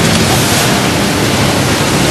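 Steady, fairly loud hiss of even noise with no clear events in it.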